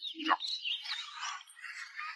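A person slurping noodles, with short high-pitched squeaks rising and falling in pitch.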